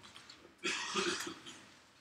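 A man's short, breathy laugh, starting about half a second in and lasting under a second.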